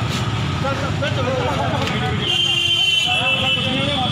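Voices of people talking over steady street traffic noise. A high steady tone comes in about halfway through and holds.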